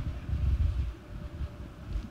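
Handling noise on a handheld microphone as it is passed between people: low rumbles and bumps, strongest in the first second.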